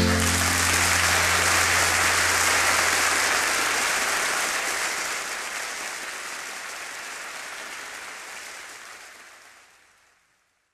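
Audience applauding as the song's last chord dies away. The applause fades out gradually over the last few seconds.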